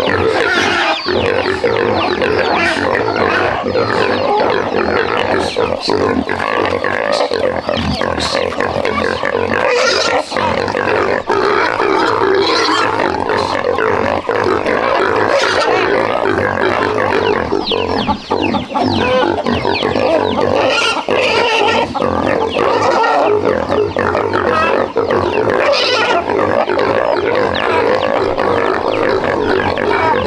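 Several pigs squealing loudly and without a break, a dense chorus of shrill, wavering cries, as they resist being dragged along on rope leads.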